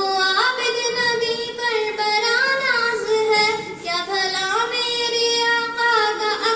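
A girl singing a naat, an Urdu devotional song in praise of the Prophet, solo into a handheld microphone, with long held notes that glide between pitches.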